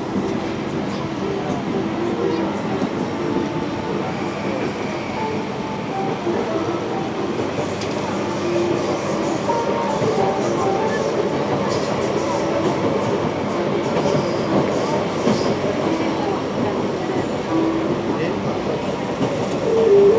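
Steady running noise of a CAF FE-10 metro train heard from inside the car as it travels at speed: a continuous rumble of steel wheels on rail.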